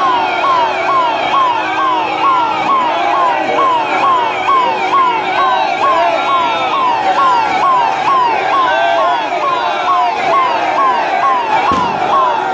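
Vehicle siren sounding a fast, evenly repeating rise-and-fall, about two cycles a second, held steadily throughout.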